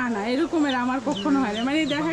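Desi chickens clucking in a poultry shed, with short high calls repeating through, over a man's voice.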